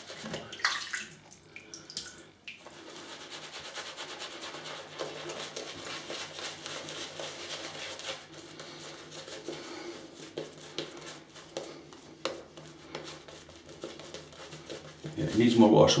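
Tap water running steadily into a bathroom sink, starting about two and a half seconds in, with faint crackling from a synthetic shaving brush working lather on the face.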